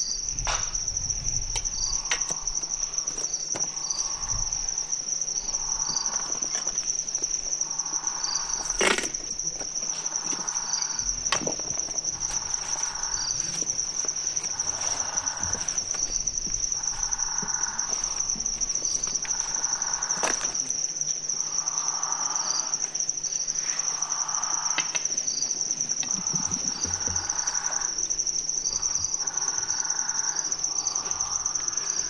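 Crickets chirring in a continuous high-pitched trill, with a second, lower call repeating about every two seconds. A few sharp clicks stand out, the loudest about nine seconds in.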